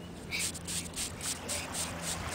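Hands scraping and digging in wet sand while going after a clam: a quick run of short, rasping strokes, about five a second.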